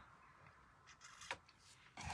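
Near silence: room tone, with one faint tap a little past the middle.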